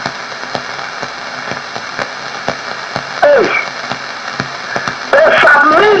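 Steady hiss with scattered faint clicks from a radio broadcast feed, broken by one short vocal cry about three seconds in; a man's preaching voice comes back near the end.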